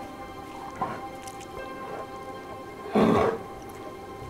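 Background music with steady held notes; about three seconds in, a short, loud call from a polar bear.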